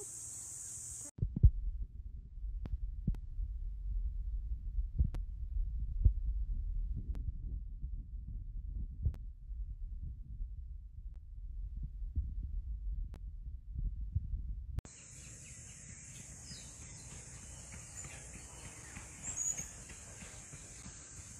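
Muffled low rumble with scattered knocks and jolts from a moving golf cart on a paved cart path. About 15 seconds in this gives way to the steady, high, shrill drone of insects over quiet open ground.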